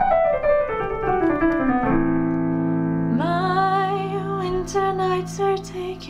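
A piano plays a chord that breaks into notes stepping downward and ringing on. About three seconds in, a woman starts singing over the held piano chords.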